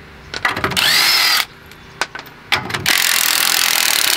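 Cordless drill with a socket spinning the wheel nuts off a car's front wheel, in two runs: a short burst of about a second near the start, then a longer run from about three seconds in. The motor's pitch rises and falls with each run, and a few clicks of the socket on the nuts come between the runs.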